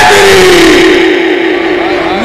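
A man's amplified naat singing through a PA with heavy echo: the end of a sung phrase trails off in repeats that fall in pitch before the next phrase.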